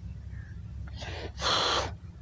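A single sharp, breathy puff of air, a person's breath, about a second and a half in and lasting under a second, over a steady low rumble.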